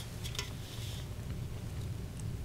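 Faint handling of two light, empty aluminum drink cans hanging on strings, with two soft taps in quick succession, over a steady low room hum.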